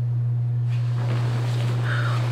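A steady low hum over a faint even hiss, unchanging throughout.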